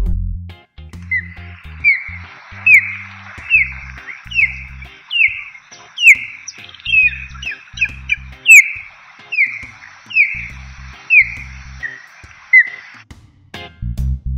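Osprey calling: a run of short, sharp, downward-slurred whistled calls, a little faster than one a second, with a quicker burst midway. The calls start about a second in and stop shortly before the end, over background music with a bass line.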